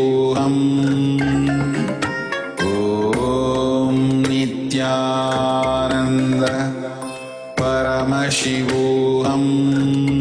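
Devotional mantra chanting with musical accompaniment, sung in long held phrases; a new phrase starts about every five seconds, with a short dip in level between phrases.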